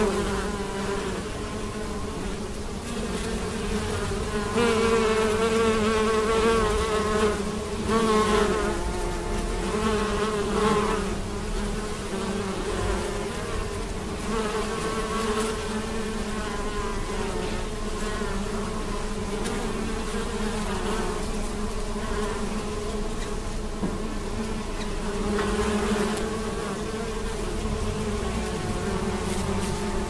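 Many bees buzzing as they forage on corn tassels: a continuous hum with a wavering pitch, a little louder in the first third.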